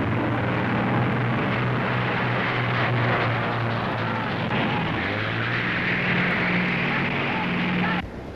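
Racing speedboat Miss America X's four Packard V12 engines running at speed, a steady drone whose pitch steps up about five seconds in.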